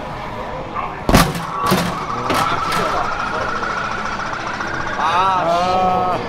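Boxing arcade machine: one hard punch lands on the bag about a second in, followed by a few smaller knocks, then a steady high electronic warbling tone as the machine tallies the score. Voices shout near the end.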